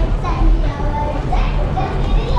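Indistinct voices in the background over a steady low rumble.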